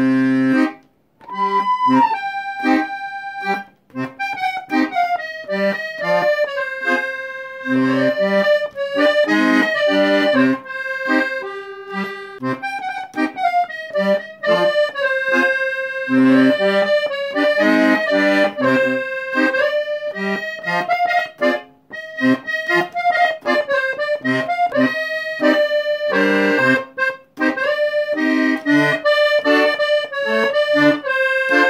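Chromatic button accordion playing a melody over bass notes and chords, with a few short breaks in the playing.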